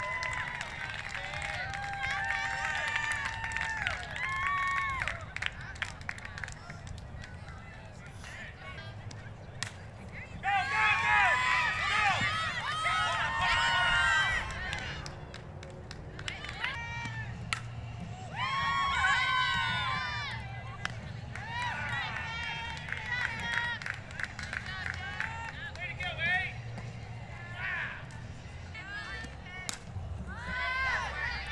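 High-pitched girls' voices cheering and chanting in bursts from a softball team, loudest in two stretches around the middle, over steady outdoor background rumble.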